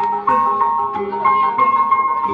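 Traditional Javanese ensemble music for a kuda kepang horse dance: tuned percussion plays a melody of held, ringing notes.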